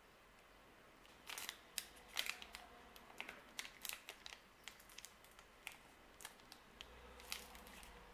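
Faint crinkling and crackling of a protein bar's foil-lined plastic wrapper being peeled open and handled: a quick run of small sharp crackles starting about a second in.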